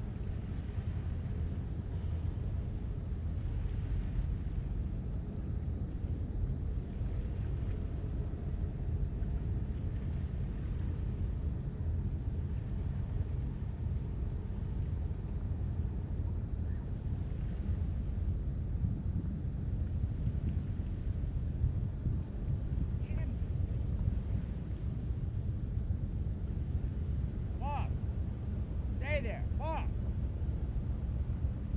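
Steady low rumble of wind buffeting the microphone, swelling in gusts every few seconds.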